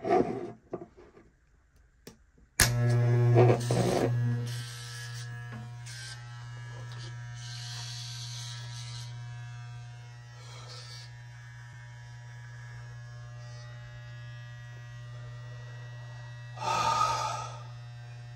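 Corded electric hair clipper handled with a few knocks, then switched on about two and a half seconds in. It runs with a steady buzz, loudest just after starting, and gets brighter and louder for a second or so at a few moments.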